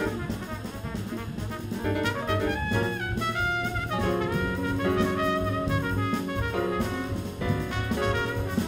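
Jazz quintet playing live: trumpet holding and moving between sustained melody notes over piano, guitar, double bass and a drum kit.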